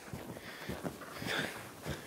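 Faint, muffled hoofbeats of two horses loping on soft arena dirt, irregular dull thuds, with a brief soft rustle a little past the middle.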